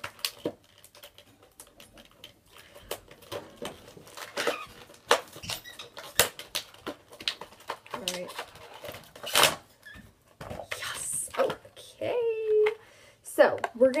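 Hands opening a small cardboard box of lip balms and the packaging inside it: irregular crinkling, tearing and clicking, with a few brief murmured voice sounds.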